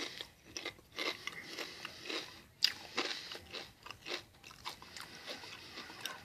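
A person chewing a mouthful of kettle-cooked potato chips: faint, irregular crunches following one another throughout.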